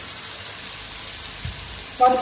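Gongura (roselle) leaves sizzling steadily in hot oil in a pan, with a soft knock about one and a half seconds in.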